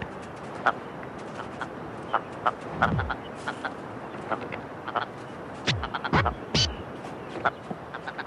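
Ptarmigan calling: a scatter of short clucks and clicks, with a few low, falling croaks about three seconds in and again around six seconds.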